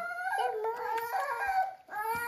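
Infant crying: a long, wavering wail that holds its pitch with small steps and breaks off briefly near the end.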